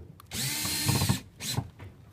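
A bee buzzing loudly close to the microphone for about a second, its pitch bending as it moves, then a shorter buzz a moment later.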